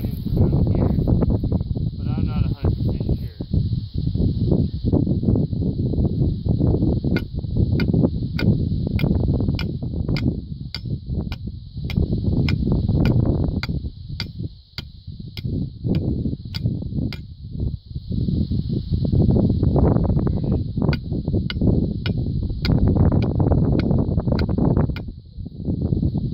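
A small sledgehammer strikes a homemade pipe core sampler, driving it into a tightly packed round hay bale: sharp metallic taps about two a second, in two runs with a pause of a few seconds between. Heavy wind rumble on the microphone runs under it.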